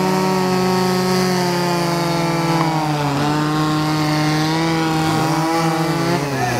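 A motor runs steadily with a few held pitches, one of them dropping slightly about halfway through.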